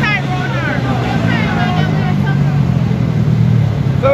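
A motor vehicle engine running steadily with a low drone that fades out near the end, under people's voices talking.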